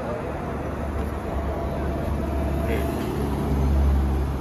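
Steady low background rumble with a faint steady hum above it.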